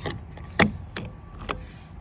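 Plastic fuel filler cap being screwed onto the filler neck, giving a few sharp clicks over about a second and a half.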